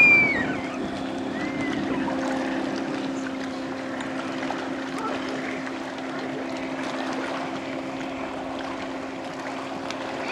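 Motorboat engine running steadily at speed while towing a tube, with water rushing past the hull. A brief, loud high-pitched cry fades out in the first half second.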